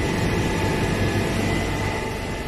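Steady mechanical hum and hiss of machinery running in the room, with a faint, constant high whine.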